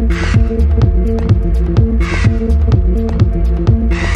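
Techno in a DJ mix: a steady kick drum a little over two beats a second under a low throbbing drone, with fast ticking hi-hats and a hissing noise burst every two seconds.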